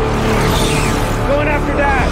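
A film sound mix of high-speed superhero flight: a steady low rushing wind, with short shouted calls that rise and fall in pitch in the second half.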